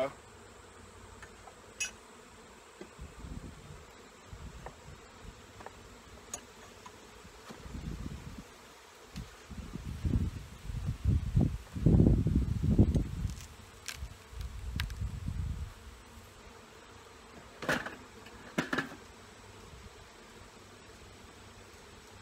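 Honey bees buzzing around an open hive. Through the middle comes several seconds of low rumbling noise, and two sharp clicks sound near the end.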